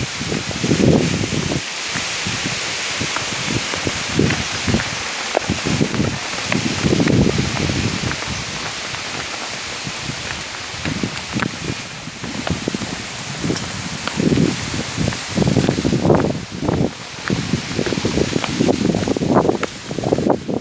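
Wind and rustling noise on a handheld phone's microphone: a steady hiss with irregular low rumbling gusts.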